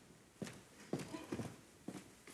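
Footsteps of hard-soled shoes on a stage floor: four steps at about two a second.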